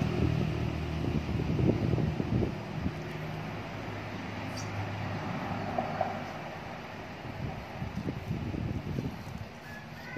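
A steady low engine hum that slowly fades toward the end, with a few soft knocks.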